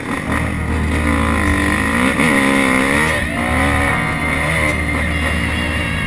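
Dirt bike engine running under the rider, its pitch rising and falling several times in the first three seconds as the throttle is worked, then steadier.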